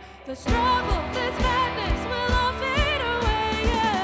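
Live worship band playing a song: a woman singing over electric guitar and bass with a steady beat. The music drops out briefly and comes back in about half a second in.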